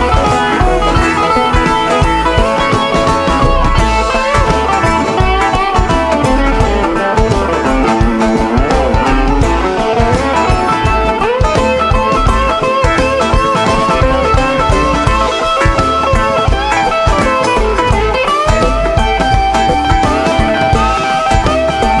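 Live band playing an instrumental break, with a semi-hollow electric guitar taking the lead in melodic lines with bent notes over drums and banjo.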